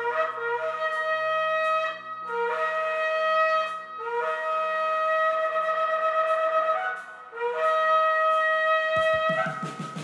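Silver trumpet sounding the Rosh Hashanah calls into a microphone: four long blasts, each starting on a lower note and stepping up to a held higher one.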